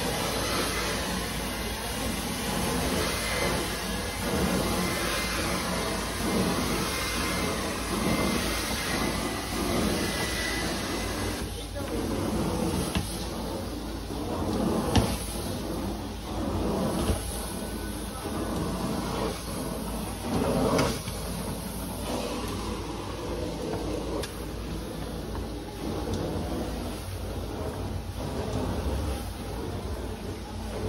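Hot water extraction carpet-cleaning wand being worked across carpet: a continuous rushing suction hiss as water and air are pulled up through the vacuum hose, swelling and easing with the strokes.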